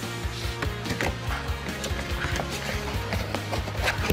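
Background music with short knocks and scraping of a cardboard box being opened by hand, its lid lifted off.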